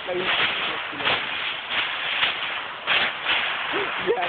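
Rustling and rubbing noise right against a covered phone microphone, coming in uneven bursts, with brief snatches of voices.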